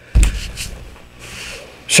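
A dull, low thump just after the start that fades within about half a second, followed by a soft breath.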